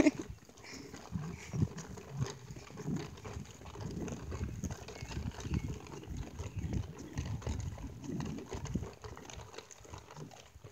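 A puppy making faint, irregular small sounds.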